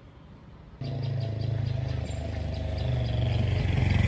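A motor vehicle engine running close by. It starts abruptly about a second in and grows louder toward the end.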